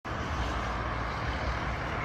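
Steady city street traffic noise: a low, even rumble of passing cars.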